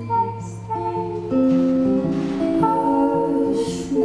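Live acoustic folk song: an acoustic guitar played under a woman's singing, held notes stepping from pitch to pitch.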